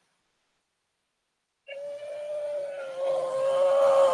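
A woman's long, held strained note of effort as she squeezes a raw chicken egg in her clasped hands, starting after about a second and a half of silence and growing louder at one steady pitch. No crack is heard: the shell holds.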